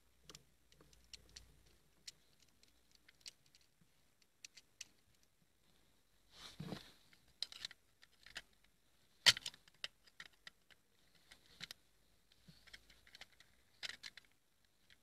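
Faint, scattered small clicks and taps as a screwdriver works the terminal screws of a plastic water-pump pressure switch while wires are fitted and the housing is handled, with one sharper click a little past the middle.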